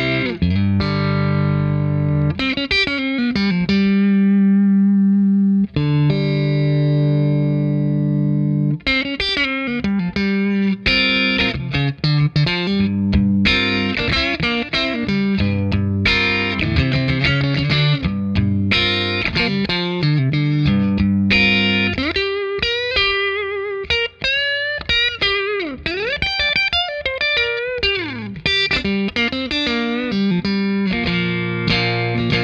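Clean electric guitar played through the Keeley Aria's compressor: chords and single notes with long, even sustain, and bent notes about three-quarters of the way through. The compressor starts fully compressed, with dry signal blended back in for a more natural pick attack.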